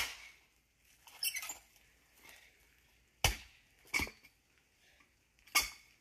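A long-handled axe striking into a log and splitting boards off it: sharp blows at the start, about three seconds in, just after four seconds and near the end, with a short crackle of splitting wood about a second in.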